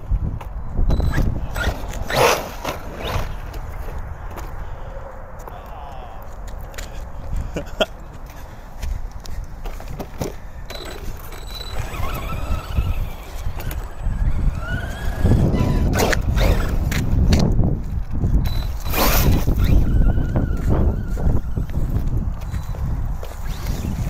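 Arrma Granite electric RC monster truck being driven on asphalt, its motor whine rising and falling with the throttle. Tyres run over the road, and there are a few sharp knocks as it tips and tumbles.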